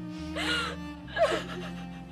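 A young woman's tearful gasping breaths, two short ones, over slow, soft string music.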